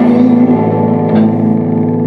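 Live rock band playing an instrumental passage: electric guitars holding ringing, sustained chords over drums, with a light cymbal or drum hit about a second in.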